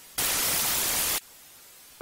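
A burst of two-way radio static about a second long that starts and cuts off sharply: the hiss of the radio channel opening between two transmissions.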